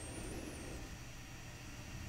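Quiet room tone between spoken sentences: a faint steady hiss, with a faint high wavering whistle in the first second.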